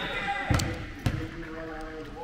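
Basketball bouncing twice on a hardwood gym floor, about half a second apart, under faint voices from the gym.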